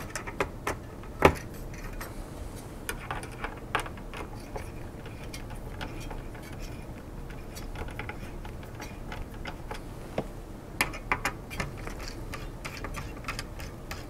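Screwdriver turning the mounting screws of a Cooler Master Hyper 212 Evo CPU cooler against its bracket: scattered small clicks and ticks in short clusters, in the first second or so, again around three to four seconds in, and near the end.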